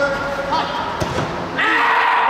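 A football being kicked on artificial turf in an indoor hall: a few sharp thuds in the first second, among players' voices. About one and a half seconds in, a louder sustained voice cuts in.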